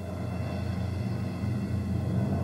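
Tu-144 supersonic airliner's engines running at takeoff power on the takeoff roll: a steady low rumble that grows gradually louder.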